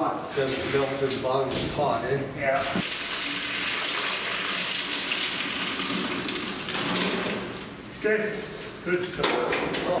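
Molten lead poured from an aluminum pot into a steel keel cavity, making a rushing hiss that starts about three seconds in and stops about five seconds later. Men's voices come before and after it.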